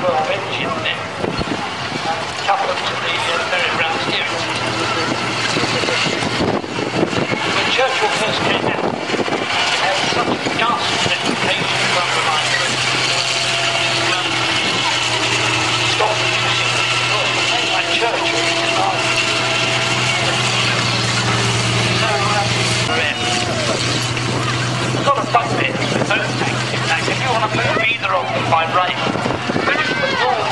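Tiger I tank's Maybach V12 petrol engine running steadily as the tank drives on its steel tracks, a constant low drone under the clatter of the tracks and running gear. A thin high whine rises through the middle.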